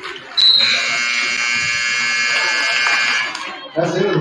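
Gym scoreboard buzzer sounding as the game clock hits zero at the end of the second period, marking halftime: one steady buzz of about three seconds that starts about half a second in and cuts off.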